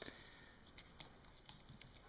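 Near silence: room tone with a few faint, soft clicks and rustles of hands handling sheets of honeycomb beeswax and a card of candle wick.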